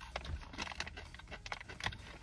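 Close-up chewing of a crunchy strawberry-shortcake-coated Flipz pretzel, heard as many small irregular crunches.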